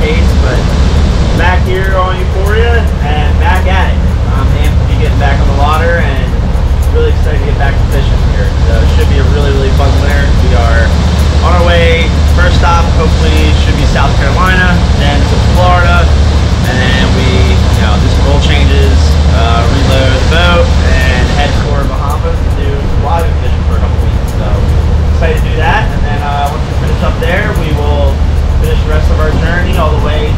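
A man talking over the steady low drone of a sportfishing boat's engines running underway, with wind rushing on the microphone.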